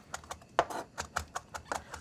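Chef's knife tapping on a cutting board as chanterelle mushrooms are split, a quick irregular run of light knocks, about five a second.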